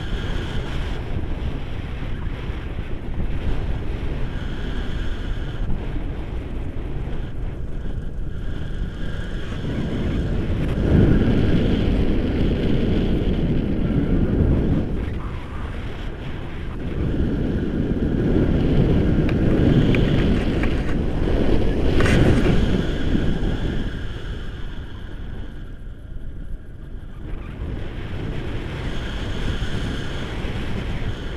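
Airflow from a paraglider in flight buffeting an action camera's microphone: a steady low rushing wind noise that swells louder twice in the middle, then eases.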